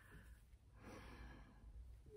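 Near silence, with a faint breath out, a sigh, starting about a second in.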